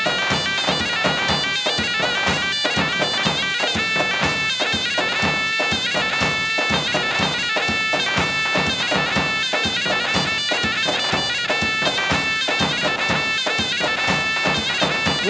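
Live Assyrian dance music from a keyboard and percussion band: a lead melody in long held notes over a steady, quick drum beat.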